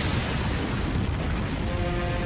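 Animated-show sound effect of a fiery blast: a sudden burst of noise with a deep rumble that holds steady, mixed with background music whose held notes come through near the end.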